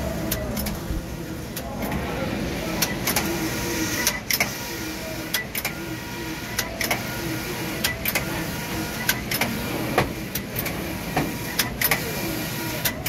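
Tongxing TX280TI 18-gauge computerized flat knitting machine running, its carriage moving back and forth along the needle bed with sharp mechanical clicks, often in pairs, about once a second over a steady machine hum.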